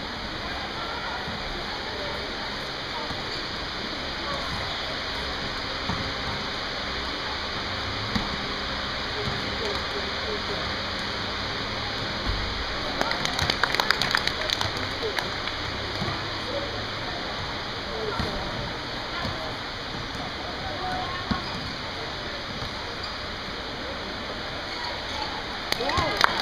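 Ambience of an indoor basketball game: a steady wash of gym noise with indistinct voices of players and spectators, and a flurry of sharp knocks and squeaks from play on the court about halfway through.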